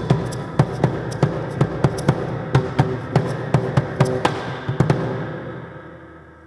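Percussion beating a steady, quick rhythm of about five strokes a second, with faint held tones beneath, as stage music. The strokes stop about five seconds in and the music fades away.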